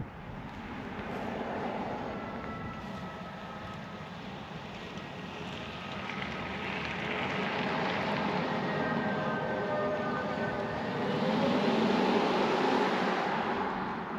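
An all-wheel-drive Hyundai Ioniq 5 electric car driving past on a tarmac road: tyre and road noise that swells and fades as it approaches and passes, with a faint high whine over it and no engine sound.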